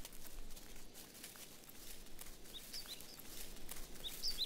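Outdoor ambience with small crackles and rustles throughout, and a bird giving short, falling chirps from a little past halfway.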